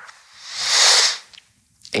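A single hissing breath from a man at close range, swelling and fading over about a second, then a brief pause.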